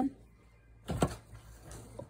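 A single short knock about a second in, with faint handling rustle around it.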